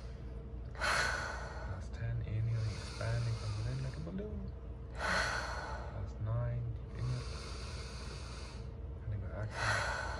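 Deep rhythmic breathing through the mouth during a breathwork round: a long, softer inhale and then a short, louder exhale, repeating about every four seconds, three times.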